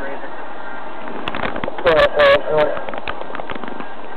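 A short burst of loud, distorted voice about two seconds in, surrounded by crackling clicks, over a steady hiss inside the patrol car.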